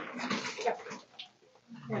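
Mostly speech at a front door, heard through a doorbell camera's small microphone, with a small dog heard among the voices.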